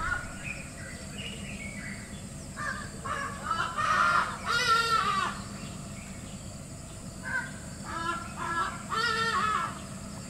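A bird calling in two bouts of repeated notes, the first from about two and a half seconds in, the second near the end, each building up to its loudest note, over a low steady background noise.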